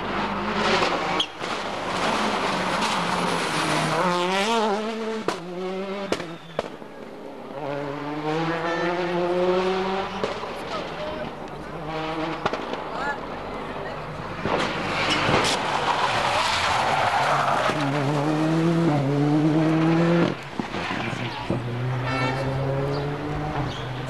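Rally car engine revving hard and accelerating, its pitch rising in several runs through the gears, with sharp cracks between them; the engine note drops away suddenly about twenty seconds in.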